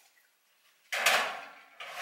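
Kitchen drawer being slid, with two sudden sliding noises a little under a second apart, the first about a second in, each fading quickly.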